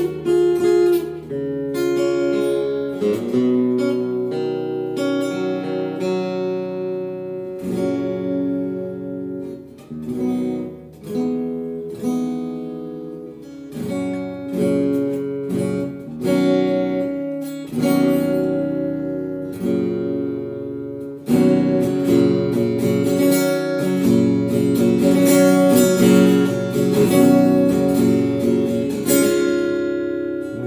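Epiphone Studio Hummingbird dreadnought acoustic-electric guitar, tuned a half step down, playing chords in phrases with short pauses between them. About two-thirds of the way through the strumming turns louder and fuller.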